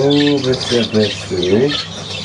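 Budgerigars chattering and warbling, with a man's low voice repeating short sing-song syllables to them in a steady rhythm.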